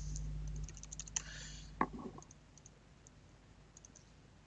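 Quiet computer-keyboard typing and mouse clicks: a scatter of short clicks in the first couple of seconds, then only a few faint ticks, over a low hum that fades in the first half-second.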